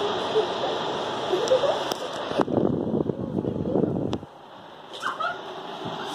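Honeywell tower fan running with a steady airy hiss. About two and a half seconds in, its airflow buffets the microphone with a louder rumbling gust, which cuts off about four seconds in and leaves a quieter hiss.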